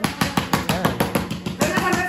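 Rapid slapping of hands on a granite countertop, about ten slaps a second, with a woman's strained voice, a reaction to the burn of the super-hot one-chip-challenge chip.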